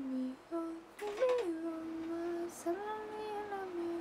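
A young woman singing softly to herself without accompaniment, close to humming: a few long held notes, with a brief rise in pitch about a second in and then two sustained notes.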